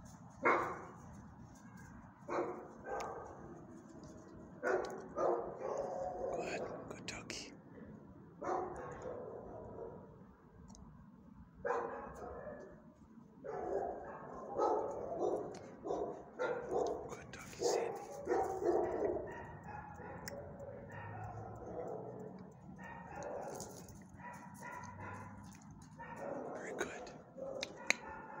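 Dogs barking in repeated short bursts that come in clusters, on and off throughout.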